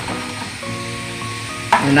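Milk heating in a steel pot on the stove, a steady sizzling hiss as a ladle stirs it, under background music of held notes that change pitch. A voice comes in near the end.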